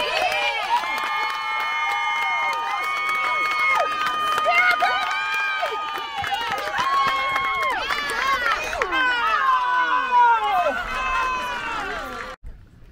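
Many voices calling out together in drawn-out, high-pitched yells, overlapping throughout, like players or fans chanting.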